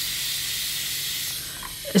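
Air hissing steadily through the nozzle of a hand balloon pump fitted to a latex balloon, one long hiss that fades slightly near the end.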